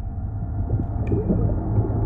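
A low droning ambient score swelling in, with a faint ringing metallic ping about a second in.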